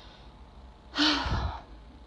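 A woman sighs once, a short breathy exhale with a slight voiced start about a second in.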